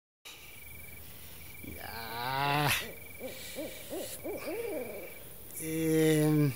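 Night-time sound effects: a steady high chirping like crickets, with a run of owl hoots. The loudest call rises and falls about two seconds in, short hoots follow, and another held call starts near the end.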